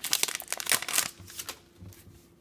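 A trading-card pack wrapper crinkling in the hands: a quick run of crackles over the first second or so, then a few faint card-handling sounds.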